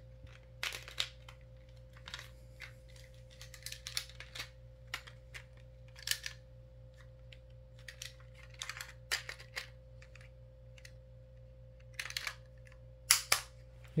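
Hard plastic clicks and rattles of a Beyblade X ripcord launcher being handled and fitted onto a launcher grip, irregular knocks and snaps, with the loudest sharp clicks near the end as it seats on the grip.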